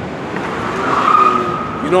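A vehicle passing in the street, with a steady high squeal lasting about a second as it goes by.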